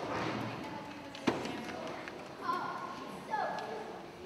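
Children's voices speaking on a stage, with one sharp thump a little over a second in.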